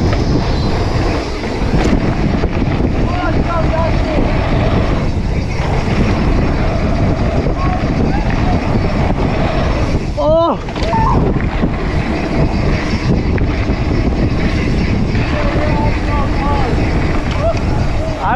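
Loud, steady wind buffeting the microphone, with faint shouts and voices, the clearest a brief rising-and-falling call about ten seconds in.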